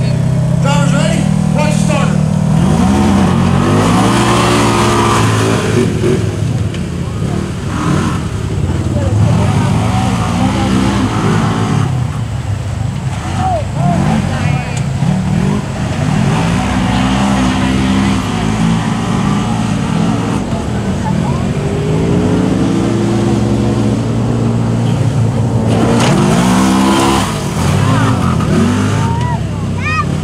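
Side-by-side UTV engines, a CFMOTO ZForce 950 Sport and a Polaris RZR, revving hard as they race. The pitch climbs and drops again and again as the drivers accelerate and back off over the jumps.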